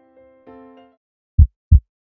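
Soft electric-piano notes fade out, then a heartbeat sound effect follows: one loud, deep double thump (lub-dub) about a second and a half in.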